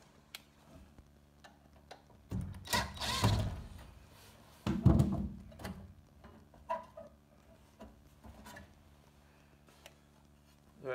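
Hands prying the sheet-metal interlock switch box off a school bus's rear emergency door: scraping and rattling around two to three and a half seconds in, a sudden loud clunk just before the middle as it comes loose, then a few small clicks and rattles of the metal box and its wires.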